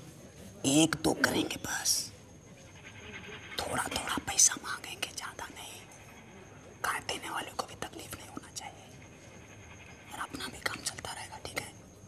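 Men talking in low, whispered voices, in four short bursts with pauses between them.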